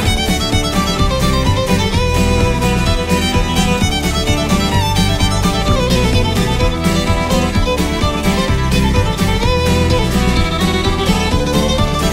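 Instrumental break of a bluegrass-style song: fiddle carrying the melody over strummed acoustic guitar and a steady bass line.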